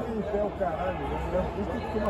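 Indistinct voices: people talking and calling out in the background chatter of a busy sports hall.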